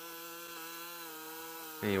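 String trimmer (whipper snipper) running at a steady speed, a constant even drone.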